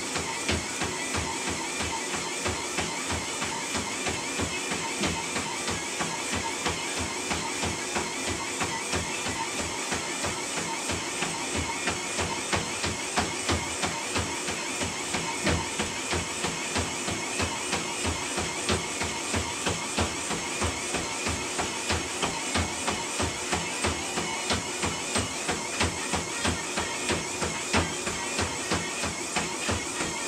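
Running footfalls landing on a motorized treadmill belt, about two and a half a second, over the steady whine of the treadmill motor, whose pitch wavers in time with each footstrike.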